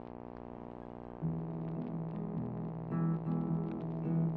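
Instrumental intro on a LAVA smart guitar: a steady sustained drone for about a second, then fingerpicked notes come in over a low repeating bass line, with higher notes joining near the end.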